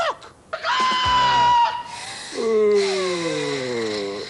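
A character's voice, wordless: a shrill, held scream, then a long wail sliding down in pitch.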